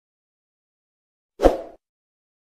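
Silence, then about one and a half seconds in a single short pop sound effect from an animated subscribe-button graphic, over in about a third of a second.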